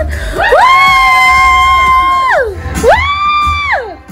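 Two long, high-pitched excited "woo" whoops from people cheering, each gliding up, held steady, then falling away; the second is shorter and starts near the three-second mark.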